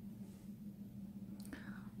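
Faint room tone with a steady low hum, and a short breath near the end.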